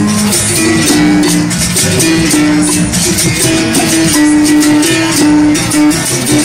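Capoeira berimbaus played together: struck-string notes alternating between two close pitches in a steady repeating rhythm, with the shaken caxixi rattles buzzing along.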